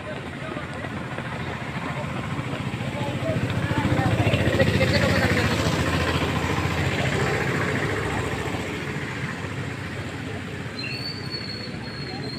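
A vehicle passing: a rumble that swells to its loudest about four to five seconds in, then fades away.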